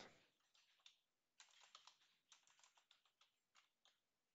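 Faint computer keyboard typing: scattered light keystrokes, bunched in a few quick runs from about a second and a half in.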